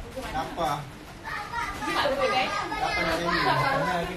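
Voices talking in the background, with children's voices among them; it quiets briefly about a second in.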